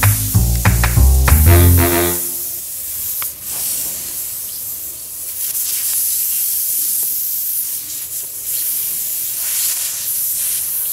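Music with a bass line stops about two seconds in and gives way to a steady hiss of air leaking from a motorcycle tyre punctured by a screw lodged in its tread.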